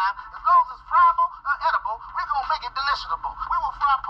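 Voices from a commercial playing through a laptop's small built-in speaker, thin and tinny with no low end, over a steady low hum.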